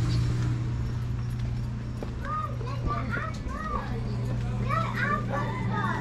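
Children's voices calling out in the background: a series of high-pitched rising-and-falling cries starting about two seconds in, over a steady low hum.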